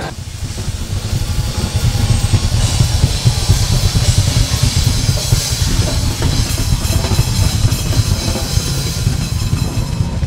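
Several drum kits played together: fast, dense bass-drum and tom strikes, with cymbals building in from about two seconds in.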